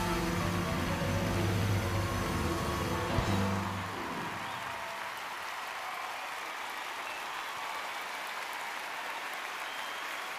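Live piano-led music ends on a final chord, with a sharp accent about three seconds in, and dies away about four seconds in; a large audience then applauds steadily.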